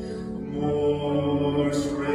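A male voice singing a slow hymn with accompaniment, in long held notes.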